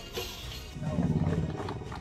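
Motorcycle engines rising in a short, low rev about a second in, over background music.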